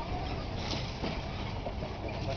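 Truck driving slowly along a rough dirt track: a steady low engine and road rumble with a few light knocks and rattles.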